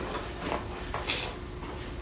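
A small cardboard parts box being handled and closed on a table: a couple of soft knocks and rustles about half a second apart, over a steady low room hum.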